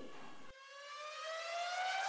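A single siren-like tone with overtones, rising steadily in pitch after a sudden cut about half a second in.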